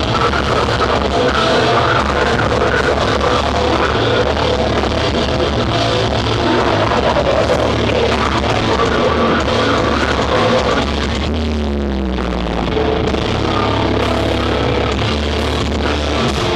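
A deathcore band playing live at full volume, with distorted guitars and drums. About eleven seconds in, the band thins out and a low note slides downward before the full band comes back in.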